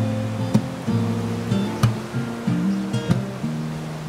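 Background music: an acoustic guitar strumming slow chords, with each chord ringing on between a few sharp strokes.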